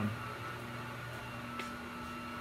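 Steady electric hum over an even hiss from three-phase woodshop machinery running on a 40 hp rotary phase converter, with no surging or change in pitch.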